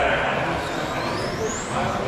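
High whine of a 21.5-class brushless electric RC touring car motor, rising in pitch over about a second as the car accelerates down the track, over people talking in the hall.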